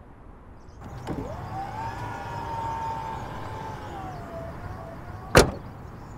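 Power tailgate of a Mercedes GLE 500e closing. A click about a second in, then the electric tailgate motor whines, rising in pitch and holding steady before dipping slightly. Just before the end comes a sharp, loud clunk, the loudest sound here, as the tailgate latches shut.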